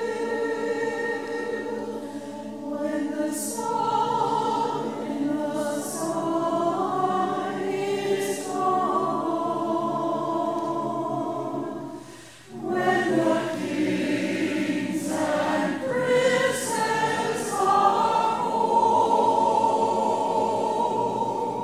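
A choir singing in held, slowly moving notes, with a brief break between phrases about twelve seconds in.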